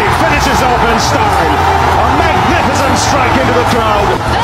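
Television cricket commentary calling a match-winning shot over a loud, cheering stadium crowd, with background music mixed underneath.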